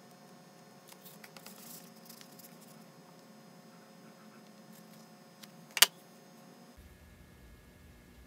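Faint small handling sounds of tweezers and a sheet of stick-on lure eyes over a steady low hum, with light ticks and rustles early on and one sharp click a little past two-thirds of the way through.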